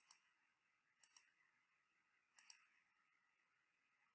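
Computer mouse button clicked three times, about a second apart, each a quick double click of press and release, faint against near silence.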